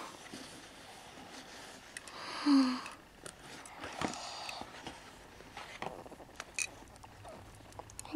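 Quiet handling and rustling noises with a few light clicks, and one short breathy voice sound about two and a half seconds in.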